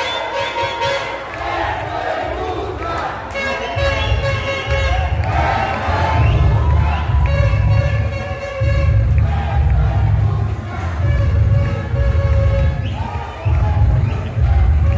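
Arena crowd cheering and shouting, with loud music with a heavy pulsing bass beat coming in about three and a half seconds in and carrying on to the end.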